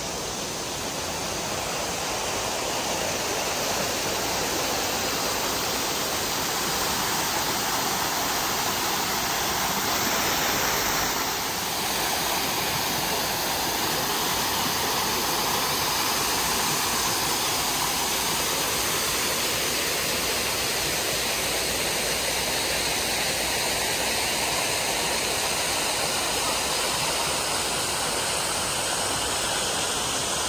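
Steady rushing of a small waterfall pouring down a rock face into a pool, an even noise of falling water with no distinct events.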